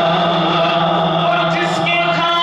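A man singing a devotional naat into a microphone in a chant-like style, holding long, slowly bending notes over a steady low drone.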